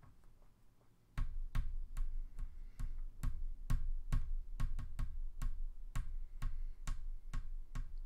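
A run of sharp, unevenly spaced clicks, each with a low thump, about three or four a second, starting about a second in.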